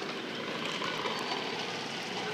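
Steady, even background noise of a large store's interior, a low hum and hiss with no distinct events.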